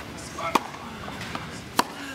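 Tennis ball struck by racquets twice in a rally, two sharp hits about a second and a quarter apart.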